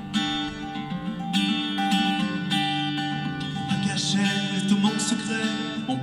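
Acoustic guitar strummed in an instrumental passage of a live song, with no voice.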